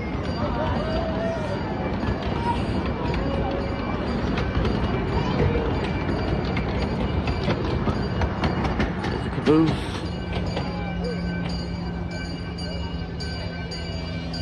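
Small-gauge passenger train rolling past, its cars rumbling and clicking along the rails. After about ten seconds the running noise drops away and a steady hum remains.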